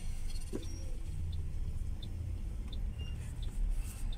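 Steady low rumble of a car's engine and road noise, heard inside the cabin of a slowly moving car. A faint, even tick sounds about every two-thirds of a second.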